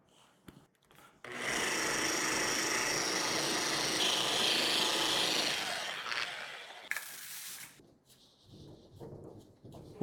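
Machine polisher running at low speed, working an aggressive scratch-repair compound into car paint. It starts abruptly about a second in, runs steadily for about four seconds, then dies away.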